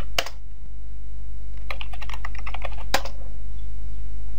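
Typing on a computer keyboard: one keystroke just after the start, a quick run of keystrokes around the middle, then one sharper click about three seconds in, all over a steady low hum.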